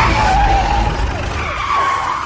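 A siren with a fast up-and-down wail, sounding over a steady low rumble of a vehicle or traffic, growing slightly quieter toward the end.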